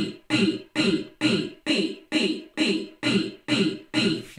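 A chopped vocal sample repeating in a stuttering rhythm, a bit more than two short hits a second, layered with a copy an octave down and thickened by iZotope's doubler plugin so it sounds like two voices.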